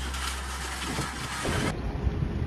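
Background music fading out over the first second and a half, then an abrupt change to outdoor noise.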